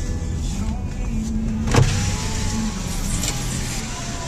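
Car's engine running with a low steady hum as a power window motor whines for a couple of seconds while the side window goes down. A single sharp click sounds a little before the middle.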